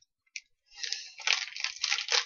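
Clear cellophane wrapping crinkling as it is handled. It starts about three-quarters of a second in, after a single faint click.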